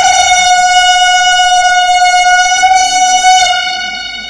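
A wind instrument in live folk dance music holds one long, loud, steady note, then fades after about three and a half seconds.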